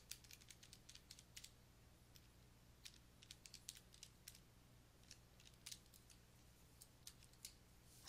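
Near silence with faint, irregular clicks of calculator keys being pressed as a sum is worked out, over a low steady hum.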